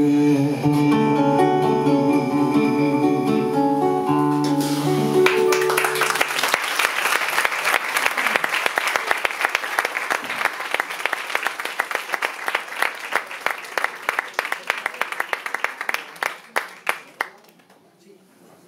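Two nylon-string classical guitars play the closing notes of a ballad and end on a final chord that rings for about six seconds. Audience applause begins around five seconds in, thins out to scattered claps and stops near the end.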